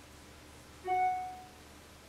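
A single short chime, one bright bell-like ding about a second in that rings and fades within half a second.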